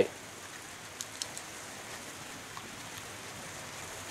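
Quiet, steady hiss of background noise, with a few soft, crisp clicks about a second in from biting into and chewing a raw Caribbean Red habanero pepper.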